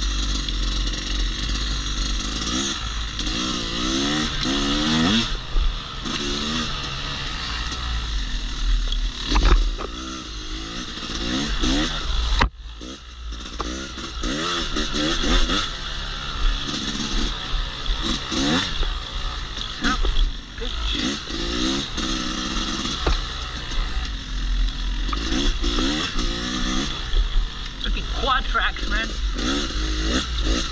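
Yamaha YZ250X two-stroke dirt bike engine revving up and down repeatedly as it is ridden along a woods trail, with a low wind rumble on the helmet microphone. The engine note drops away briefly about twelve seconds in, then picks up again.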